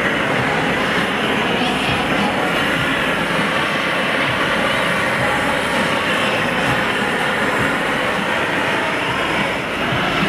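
Steady roar of a hand-held gas torch flame heating a hot blown-glass sculpture, with no break in the noise.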